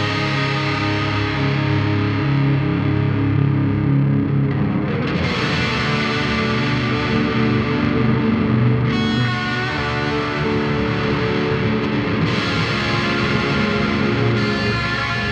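Overdriven electric guitar, a Dean Thoroughbred, played through a Mesa Boogie amp with an Eventide Rose delay pedal in the amp's effects loop. Sustained notes and chords ring through the delay, with the playing shifting about five seconds in and again near nine seconds.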